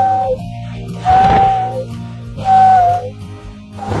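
Walrus whistling through pursed lips: three short whistles on one steady note, the second with a rush of breath through it, over background music.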